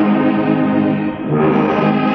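Church orchestra of a Congregação Cristã no Brasil rehearsal playing a hymn in sustained chords, moving to a new chord about a second and a half in after a brief dip. It is heard from an old cassette recording, dull with no high treble.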